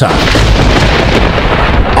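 Loud thunder sound effect: a dense, deep rumble that holds steady.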